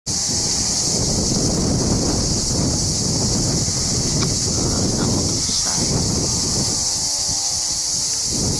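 Wind buffeting the camcorder's microphone in a loud, uneven rumble, with a steady high hiss above it.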